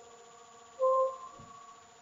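Gear pump rig running, a steady hum of several tones. About a second in comes a short, loud squeak-like tone, the loudest thing heard.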